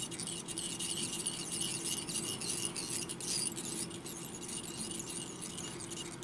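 Veevus 16/0 tying thread being wound round a fly hook in a vise from a bobbin, squeaking and rasping faintly as it pays out and slides over the shank, building thread up behind the bead. A steady faint hum runs underneath.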